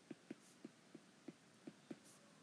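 Faint taps and ticks of a stylus writing on a tablet screen, about seven short taps in two seconds, with a brief scratch of the tip now and then.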